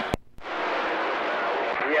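CB radio receiver static once the mic is released: a click and a brief gap, then a steady hiss from the speaker, with another station's voice coming faintly through the noise near the end.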